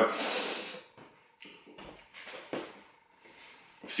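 A person's short, noisy breath out, fading within the first second, then near-quiet with a few faint small clicks.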